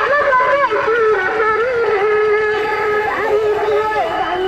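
A man's voice singing a long, wavering devotional chant with drawn-out held notes, loud and horn-like in tone.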